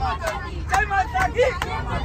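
A group of men singing together on a bus and clapping their hands in rhythm, about two claps a second, over the steady low rumble of the bus.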